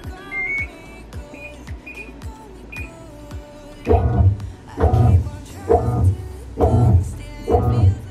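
Background music, with falling synth sweeps and then a heavy beat that comes in about four seconds in, pulsing about once a second. A few short high beeps in the first three seconds come from the washing machine's control-panel buttons being pressed.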